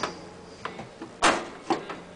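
Metal toggle clamps on a vacuum former's clamp frame being released by hand: a series of sharp clicks and clanks, the loudest and longest a little past halfway.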